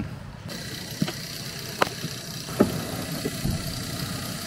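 An Opel van's engine idling, heard from inside the cab, with a few light clicks spread through it.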